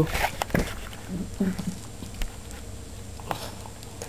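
A dog licking close to the microphone: a scatter of soft wet smacks and clicks.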